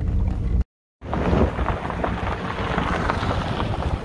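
Ford Mustang rolling over a rocky gravel road: its tyres crunch and crackle on loose stones over a low rumble of engine and road noise. The sound drops out completely for a moment just under a second in.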